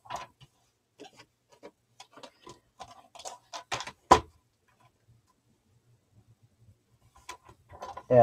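Paper and craft tools being handled on a cutting mat: scattered light clicks and taps, with one louder tap about four seconds in, then a near-silent stretch.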